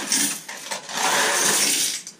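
Loose coins being poured from a small paper box into a glass jar that already holds coins. A short jingle comes first, then from about a second in a longer steady run of clinking, rattling coins.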